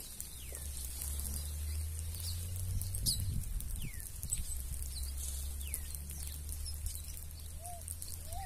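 A mixed flock of small seed-eating birds, red-cowled cardinals among them, calling while they feed on the ground. There are scattered high chirps and thin whistles that slide downward, and near the end a lower call repeats about twice a second. A steady low hum runs underneath.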